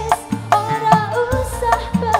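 Live dangdut band music: a bending melody line and a female singing voice over a steady beat of drum strokes, with low drum notes that glide upward in pitch.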